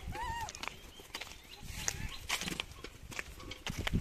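A crowded troop of rhesus macaques feeding, giving scattered short, squeaky rising-and-falling calls over brief clicks and scuffles.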